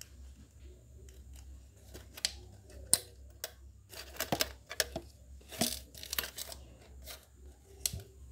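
Handling noise from a metal drink can and plastic bottle parts being moved and fitted by hand: scattered sharp clicks, knocks and rustles, the loudest a single click about three seconds in, with a cluster of knocks in the middle. A steady low hum runs underneath.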